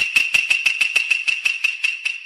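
Logo intro sound effect: a high, steady ringing tone struck by quick, even taps about six a second. It grows fainter toward the end.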